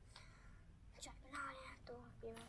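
Soft whispered voices at a low level, close to near silence, with a brief faint scratch about a second in as the twig-and-grass kindling is lit.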